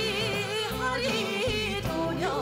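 A Korean trot song performed live: a singer holds long notes with wide vibrato over a band backing track with a steady beat.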